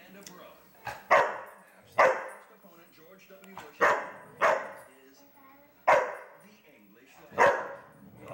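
Chocolate Labrador barking six times in loud, separate barks a second or two apart, at a can of compressed air that upsets him.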